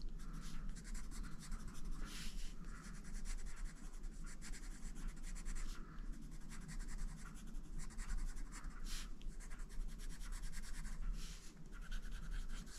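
A wax-core Prismacolor Premier coloured pencil scratching on colouring-book paper in rapid, short back-and-forth strokes as colour is filled in, with a few louder strokes along the way.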